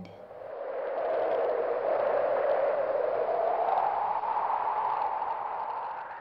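Whoosh sound effect: a swell of rushing noise that builds over the first second, drifts slowly upward in pitch, and fades away near the end.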